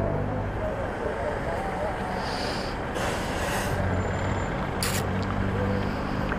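Honda CG 150 Fan's single-cylinder four-stroke engine idling steadily while the motorcycle waits at a junction, amid street traffic. A short sharp hiss cuts in about five seconds in.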